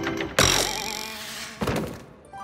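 A sudden mechanical clunk about half a second in that rings on and fades over about a second, then a second, shorter knock shortly before the end.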